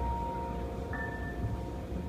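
Quiet live ensemble music with piano: a single high note held softly, with a higher note joining about a second in, over a low rumble of room noise.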